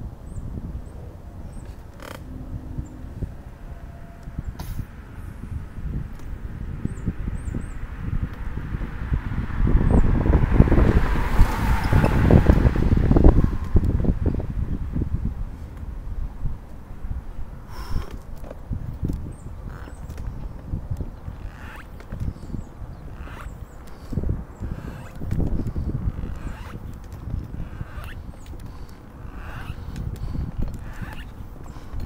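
A manual wheelchair rolls slowly up a concrete sidewalk, with a steady low rumble on the microphone and scattered clicks and knocks. About ten seconds in, a car passes on the street alongside, swelling up and fading away over a few seconds.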